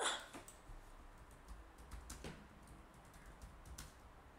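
A brief laugh, then faint computer keyboard typing: scattered key clicks as a search term is typed.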